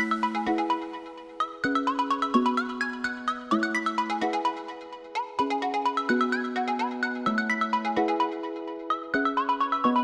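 Electronic dance music: a synth melody of quick short notes over held lower notes that change about every second.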